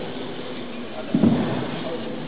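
Indistinct murmur of people talking in the background, with a brief louder low burst a little over a second in.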